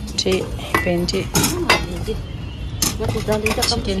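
Stainless steel bowls, lids and serving spoons clinking and knocking together as food is dished out, with several sharp ringing strikes of metal on metal.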